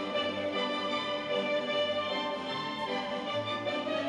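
Orchestral music with strings holding sustained chords: an arrangement of musical-theatre tunes made as a freestyle dressage soundtrack, here the short trot passage that links two of its musical chapters.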